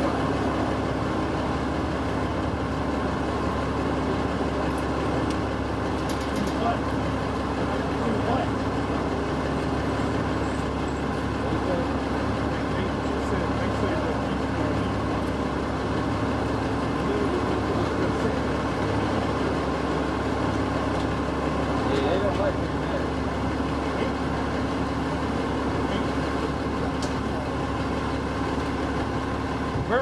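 City bus idling at the curb: a steady engine hum with street noise, and faint voices in the background.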